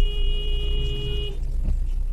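A vehicle horn held in one long steady blast that cuts off suddenly a little over a second in, over the low rumble of a car driving on the road.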